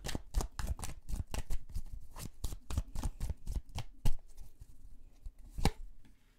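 A tarot deck shuffled by hand, its cards slapping and clicking together in quick repeated patters, several a second. A couple of sharper knocks come near the end, the loudest about four seconds in.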